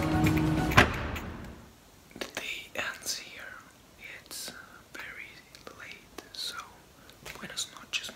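Background music fading out over the first second or so, with one sharp knock just under a second in, then a man speaking softly, close to a whisper.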